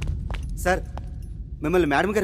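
Film background score: a low rumbling drone under short wavering sung vocal phrases, one about a second in and another near the end, with a few light clicks in between.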